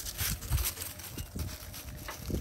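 Dogs stepping and scuffling through dry fallen leaves close to the microphone: irregular crackling rustles and soft thumps, busiest in the first second.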